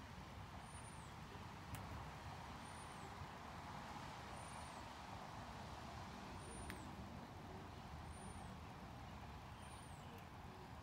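Quiet outdoor background: a steady low hum, like distant traffic, with a faint short high-pitched chirp repeating about every two seconds and a couple of soft clicks. The leaf blower is not running.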